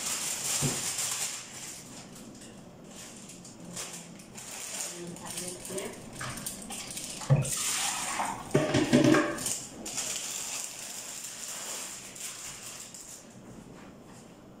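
Kitchenware being handled: a sharp knock about seven seconds in, then a short clatter of pots and utensils, with faint voices in the background.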